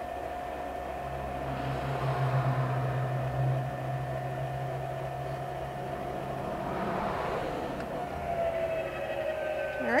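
Electric trailer tongue jack motor running steadily with a whine, extending the jack down onto a leveling block under the trailer's weight. Its pitch sags slightly near the end as it takes the load.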